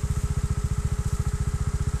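Trials motorcycle engine idling steadily, a fast, even beat of firing pulses.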